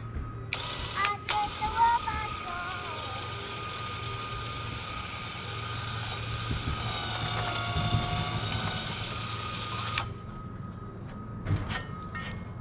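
ATV engine running steadily, with a louder mechanical whine and clatter laid over it that starts about half a second in and cuts off suddenly near the end.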